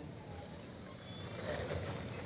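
Radio-controlled race cars running laps on an oval track, growing louder as cars pass about one and a half seconds in.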